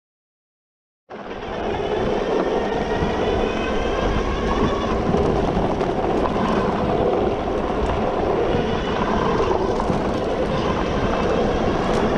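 Super73 R electric bike ridden along a dirt trail: steady wind and tyre noise, with a faint whine rising and falling above it. The sound starts abruptly about a second in.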